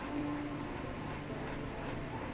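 Low, steady room background hum in a pause between speech, with a few faint, scattered clicks.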